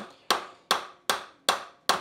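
Soft-faced mallet striking the end of a South Bend lathe spindle, gently knocking a gear loose from the spindle. Five evenly spaced sharp knocks, about two and a half a second, each dying away quickly.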